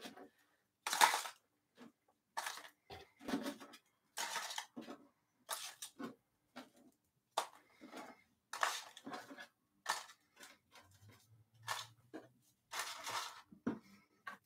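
Short, irregular bursts of rustling and clinking from things being handled by hand, a dozen or so with brief gaps between them.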